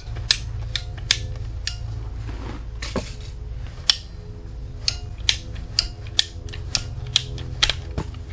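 Ratcheting PVC pipe cutter being squeezed through a PVC pipe: a series of sharp ratchet clicks at uneven intervals, about one to two a second, over a steady low hum.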